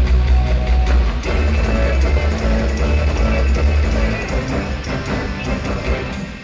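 Live rock band playing: electric guitar, bass and drum kit at full volume, heard on an audience tape of a mid-1970s concert.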